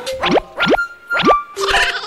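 Three quick sliding-pitch cartoon sound effects in a row, boing-like comedy stings, over light background music.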